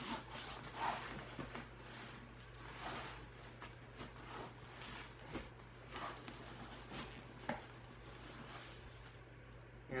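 Soft cloth rustling and handling noises as a fabric rag and the guitar case's compartment contents are moved about, with a few light clicks and taps, over a steady low electrical hum.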